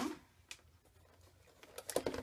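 Mostly quiet room, with a single light click about half a second in and a few faint clicks near the end as a clear plastic die storage case is handled.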